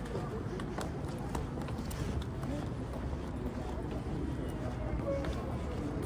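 Street ambience while walking: irregular footsteps on pavement over a steady low rumble, with faint voices in the distance.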